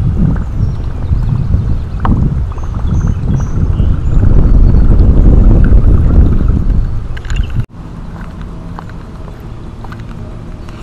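Wind buffeting the camera microphone: a heavy, uneven low rumble that swells through the middle and cuts off suddenly about three quarters of the way in, leaving a much quieter steady background.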